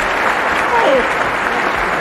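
Audience applauding steadily.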